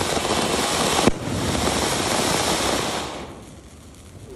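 Ground fountain firework (anar) spraying sparks with a loud, steady hiss and crackle, with one sharp crack about a second in. The hiss dies down quickly near the end as the fountain burns out.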